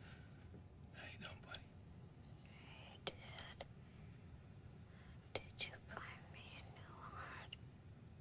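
A man whispering softly in short, breathy phrases, with a few sharp clicks between them.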